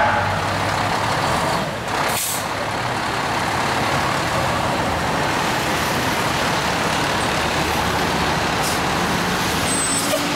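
Fire rescue truck's diesel engine running as it pulls out and turns onto the road, with a steady rush of noise throughout. A short air-brake hiss comes about two seconds in.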